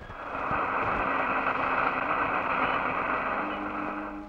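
Jeep driving along a forest track, a steady engine-and-road noise that drops away near the end.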